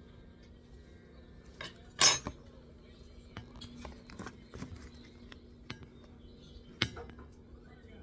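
Metal utensil clinking and knocking against a stainless steel stockpot: a sharp knock about two seconds in, another near seven seconds, and scattered lighter clicks between.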